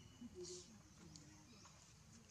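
Near silence: faint outdoor forest ambience with a few soft, quick rising bird chirps and a brief faint rustle about half a second in.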